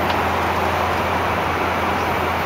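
Steady airliner cabin noise in flight: an even, unbroken rush of engine and airflow noise over a low hum.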